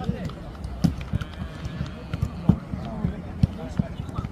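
Footballs being kicked and bounced on a grass pitch: a string of short, irregular thuds, a few of them sharp and loud, over the murmur of players' voices.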